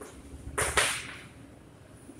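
Chalk scratching on a blackboard as a word is written, two short strokes close together about half a second in.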